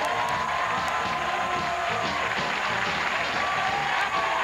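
Studio band music played over studio audience applause and cheering, steady throughout.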